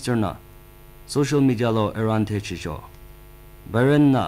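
A news reader speaking, with a steady mains hum under the voice that is plainest in the pauses between phrases.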